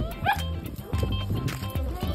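A dog barks once, shortly after the start, over background music.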